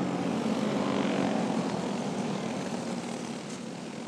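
Champ kart engines running at a steady pace as the karts circle under a caution, the sound fading gradually.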